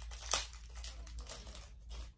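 Small plastic packaging bag crinkling as it is handled, in irregular rustles with one sharper crackle about a third of a second in.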